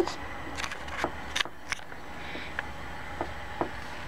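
Pencil drawing on a sheet of paper over a hard tabletop: irregular light taps and short scratchy strokes, a dozen or so in four seconds.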